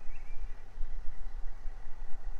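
Low wind rumble on the microphone, rising and falling unevenly, with a faint bird chirp just after the start.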